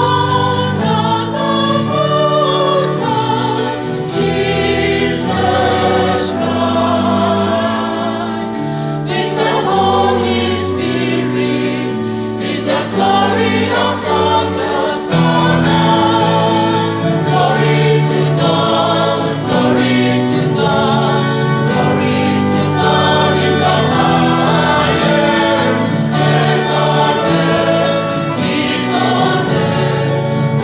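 Church choir of women's and men's voices singing a hymn in several parts, the chords held and moving together over a steady bass line.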